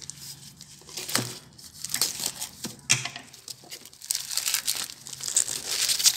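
Crinkly plastic wrapping being torn and pulled off a box by hand, with irregular crackling and tearing that grows busier from about two seconds in.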